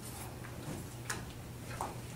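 A few light clicks from a laptop being worked, the sharpest about a second in, over a steady low hum.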